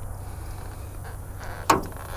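Low, steady background rumble with a single short knock near the end.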